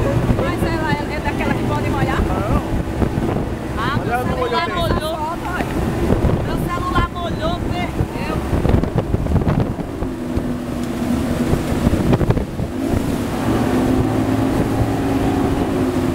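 A motorboat's engine running at speed under heavy wind noise on the microphone, with water rushing past the hull. Its note drops about ten seconds in.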